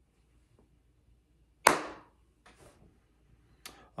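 A single sharp, sudden sound about a second and a half in, dying away within half a second, followed by two fainter short noises.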